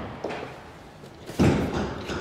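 Hood release lever pulled in the Aurus Senat's driver footwell, with a light knock near the start and then one loud thump about one and a half seconds in, as the bonnet latch lets go.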